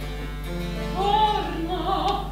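Baroque opera music: a small instrumental ensemble holds a chord, then a singer's voice enters about a second in with vibrato over the accompaniment.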